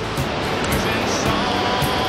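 Steady rushing noise of wind and rain on the microphone, with music faintly underneath.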